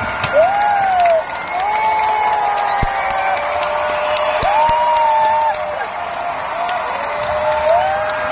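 Large arena audience applauding, with voices whooping and cheering in long rising and falling calls over the clapping.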